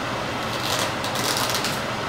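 Plastic wrap crinkling as it is peeled off a foam tray of sausages, over a steady hiss of room ventilation.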